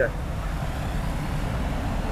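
Steady background road-traffic noise: an even low rumble with a faint hiss above it, with no single engine standing out.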